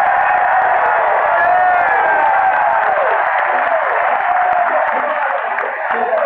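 Large baseball stadium crowd cheering and shouting, a loud, steady din of many voices with individual shouts rising and falling through it.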